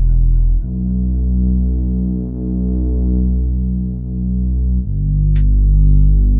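Minimal electronic music: deep, sustained synthesizer bass and pad chords, slowly pulsing, shifting to a new chord about half a second in and again near the end, where a single sharp percussive hit comes in.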